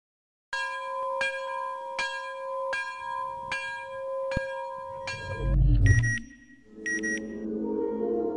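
Intro music: a ringing bell-like tone struck again about every three quarters of a second for about five seconds, then a deep boom, two short high beeps, and a sustained low ambient chord.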